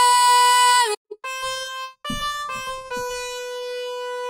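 Electronic keyboard sounding a steady note around B4, held for about a second and cut off, then played again a few more times, with the last one held long, picking out the pitch of a sung note.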